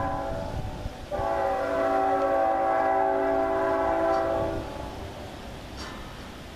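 Air horn of a CN GE ET44AC Tier 4 locomotive on an approaching freight, sounding for a grade crossing: a chord blast ending about a second in, then a long blast of about three and a half seconds.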